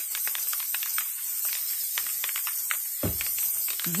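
Aerosol can of spray adhesive spraying in a steady hiss with a crackle of small clicks, coating a wooden cutout inside a cardboard box. There is a soft low bump about three seconds in.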